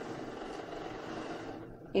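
Cricut Maker 3 cutting machine running steadily as it draws in the loaded cutting mat to measure its length.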